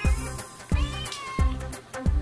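Background music with a steady beat, over which a kitten meows about a second in.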